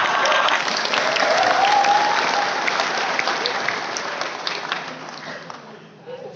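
Audience applauding: a dense patter of hand claps that fades away gradually toward the end, with a voice or two from the crowd mixed in near the start.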